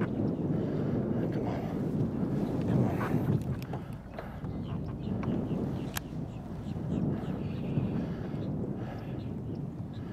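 Wind buffeting the microphone, a dense, uneven rumble, with a sharp click about six seconds in.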